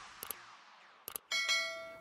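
The last of an electronic intro jingle dies away, then a click and a bright bell-like chime sound effect of several tones that rings on, the kind that goes with a subscribe-button animation.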